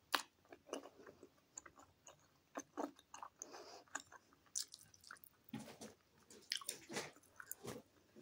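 Close-miked chewing of a mouthful of food: irregular wet smacks and clicks of the lips and mouth, with a sharp lip smack just after the start and a busier run of mouth sounds in the second half.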